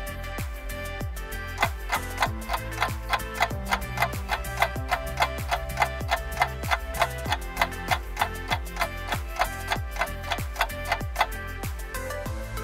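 Background music with a quick, steady clock-like ticking: a countdown-timer music bed, the ticks growing more prominent after the first second or two.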